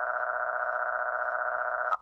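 A computer text-to-speech voice holding one long, flat, buzzy vowel at a constant pitch, thin and telephone-like in tone, which breaks off at the end.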